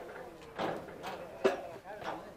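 Indistinct voices of nearby spectators talking, with no clear words. A single sharp knock or click about a second and a half in is the loudest sound.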